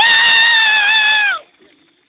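A person's voice holding one long, high, steady note for just over a second, sliding up into it at the start and falling away at the end, as in a sung or shouted call.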